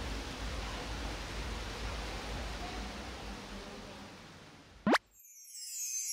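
A faint, steady hiss of background noise that slowly fades out, then a quick rising sweep sound effect just before the end, cut off into a moment of silence.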